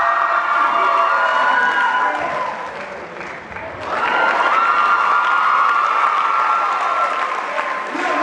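A large audience applauding and cheering, with long high-pitched yells held over the clapping. It eases briefly about three seconds in, then swells again a second later.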